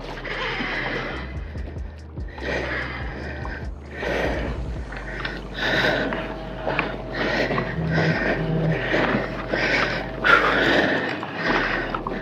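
A fishing reel being cranked against a hooked king salmon, heard as rhythmic bursts about once a second, over background music.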